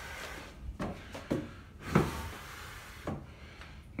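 A few light knocks and rubbing sounds over a faint hiss, the loudest knock about two seconds in: handling noise as the camera is moved around inside the wood-framed trailer.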